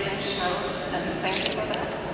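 Indistinct voices in a large hall, with a few sharp camera shutter clicks from still cameras, several in quick succession partway through.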